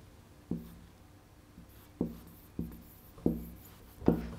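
Dry-erase marker writing on a whiteboard: four short separate strokes, one about half a second in and three in the second half.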